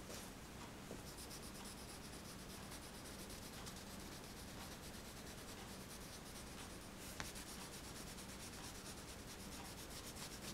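Crayon scratching and rubbing across paper in quick repeated strokes as a drawing is coloured in, close to the microphone. A single small click about seven seconds in.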